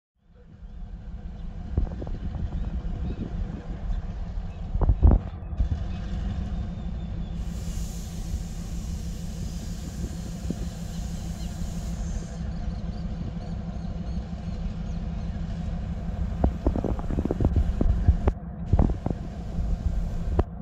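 EMD GR12W diesel-electric locomotive's engine running steadily at low throttle as it creeps forward, a deep even rumble. Several knocks and clanks come through it, a loud one about five seconds in and a cluster near the end, and a hiss rises over it for a few seconds in the middle.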